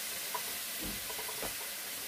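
Pork belly sizzling steadily in a hot pan on a portable gas burner, with a few faint clicks of metal tongs against the pan.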